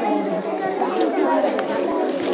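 Background chatter of many voices talking at once, steady and with no single clear speaker.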